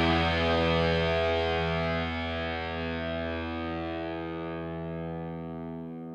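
Music: a final held chord on distorted electric guitar with effects, ringing out and slowly fading away.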